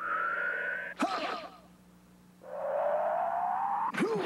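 Cartoon action sound effects: a rising synthesized whoosh, then a sharp hit with a brief ringing about a second in. After a short lull comes a longer, lower rising whoosh that ends in another sharp hit.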